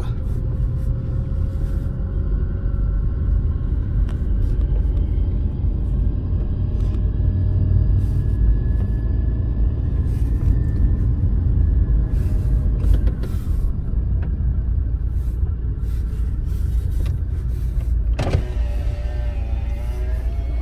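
Car cabin noise while driving: a steady low rumble of engine and tyres heard from inside the car, with a faint whine rising slowly in pitch over the first half.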